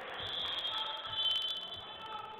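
Referee's whistle blown in one long, high-pitched blast of about a second and a half, stopping play.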